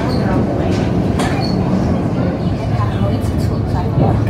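Electric suburban train heard from inside the carriage while moving: a steady low rumble of wheels on track, with a few sharp clicks, one about a second in and a couple more late on.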